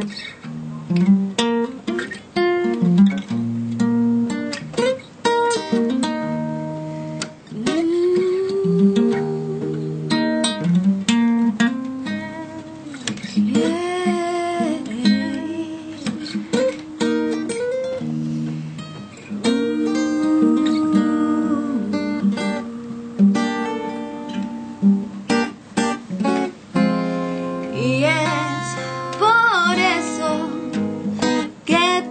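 Acoustic guitar playing a soft, calm blues, with a woman singing over it.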